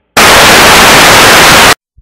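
Loud TV static hiss, a television-snow transition effect, starting abruptly and cut off sharply after about a second and a half.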